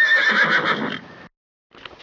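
A horse whinny: one call that rises sharply, wavers and fades out about a second in. After a brief dead gap, faint room tone with a single click near the end.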